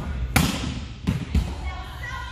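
A volleyball being hit hard on an attack at the net: one sharp, loud smack about a third of a second in, then two quicker ball thuds about a second in, in a large gym.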